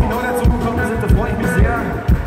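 Live band playing with a steady low drum beat, about four strokes a second, under electric guitar.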